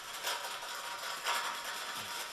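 A wetted Pumie pumice scouring stick rubbed back and forth on a gas stove top around a burner opening, a scratchy abrasive scrubbing with louder strokes about a third of a second in and just past a second. It doesn't sound real good, but the pumice does the surface no harm as it scours off stains.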